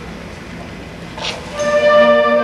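Hall room noise, then about one and a half seconds in a concert band comes in together on a held chord, much louder than the room noise before it.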